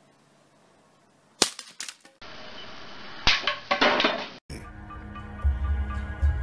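Wooden longbow breaking at full draw: a sharp crack about one and a half seconds in with a short clatter after it, then another crack and clatter about three seconds in. Background music follows in the last part.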